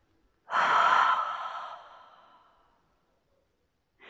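A woman's long, audible out-breath, a sigh that starts suddenly about half a second in and fades away over nearly two seconds, demonstrating the big release breath that follows a still point.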